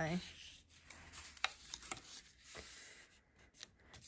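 Faint rustling of a large sheet of patterned scrapbook paper being handled and slid across a craft desk, with a few small light taps and ticks.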